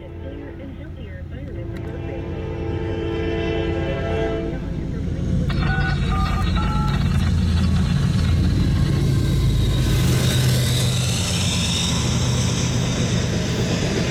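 Norfolk Southern freight locomotive's air horn sounding a held chord for about four seconds, then the diesel locomotives passing close with a heavy low engine rumble that builds and stays loud. After that comes the clatter and rumble of double-stack container cars rolling by.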